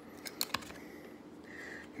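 Trading cards being handled: a few light clicks and rustles in the first half as a card is slid off the stack and turned over. The whole thing is fairly quiet.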